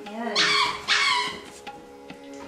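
A dog barking twice, two short, loud barks about half a second apart, with faint steady music behind.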